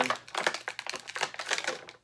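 Rigid plastic blister tray clicking and crackling as a small figure accessory is pried and pulled at inside it: a quick, irregular run of sharp clicks that tapers off near the end.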